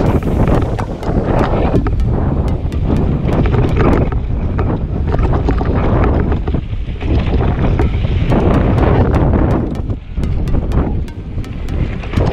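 Wind buffeting the microphone of a camera riding on a mountain bike at speed downhill, mixed with the tyres and frame rattling over a rocky trail. Many small clicks and knocks run through it.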